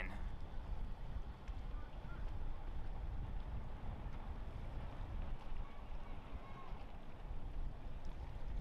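Steady low rumble with a faint hiss: outdoor background noise, with no distinct knocks or scrapes.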